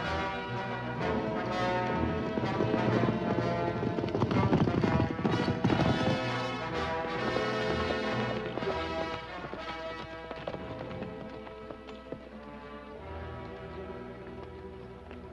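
Horses galloping, their hoofbeats loudest a few seconds in and fading in the second half, under an orchestral film score.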